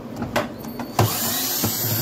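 A few sharp clicks and knocks, then about a second in a cordless drill-driver starts running steadily, removing screws from a front-loader washing machine's plastic tub.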